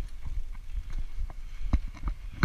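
Mountain bike rattling as it rolls over a rough dirt trail: irregular hard clacks and knocks from the bike over a low rumble, with a louder knock near the end.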